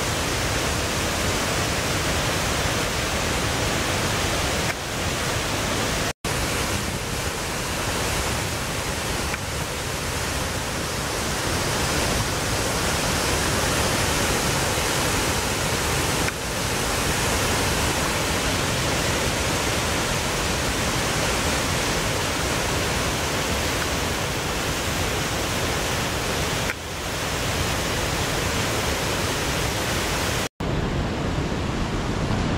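Rain-swollen creek pouring over a waterfall and churning in the pool below: a loud, steady rush of water. The sound cuts out for an instant about six seconds in.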